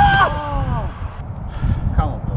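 A man's excited shout of celebration after a goal, falling in pitch and fading out about a second in, over a steady low outdoor rumble.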